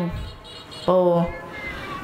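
Young monk's voice preaching a Khmer dhamma sermon in a drawn-out, sung style through a microphone: a short pause, then one held syllable about a second in.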